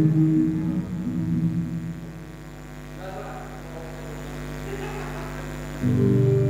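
A band's guitars and other instruments let a chord ring out and fade over about two seconds, leaving a steady low hum; near the end the band comes back in together with sustained notes.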